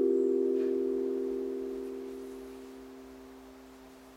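Galvanized steel tank drum, tuned to a C Hindu scale, with several of its low notes ringing on together after the last strokes and fading away slowly and evenly.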